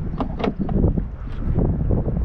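Wind buffeting the microphone in a steady low rumble, with a few light clicks as a car's push-to-open fuel filler flap is pressed and swings open.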